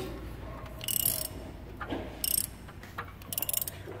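Ratchet wrench clicking in three short bursts about a second apart, as it is worked on the engine.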